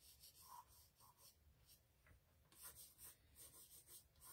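Faint pencil strokes on thick paper: short scratching runs in a few clusters as branches are drawn.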